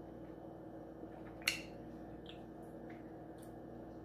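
Quiet room hum with a few faint small clicks from sipping wine from a glass and tasting it. The clearest click comes about one and a half seconds in.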